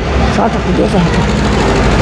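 Talking voices over a steady low rumble of motor-vehicle engine noise; the speech fades about halfway through, leaving a steady hum.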